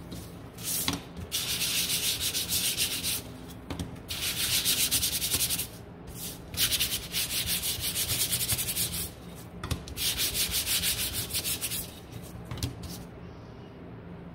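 A sanding sponge rubbed rapidly back and forth over the edges of thin wooden cutouts. The strokes come in four longer spells of a second or two each, separated by short pauses, with a couple of brief rubs besides.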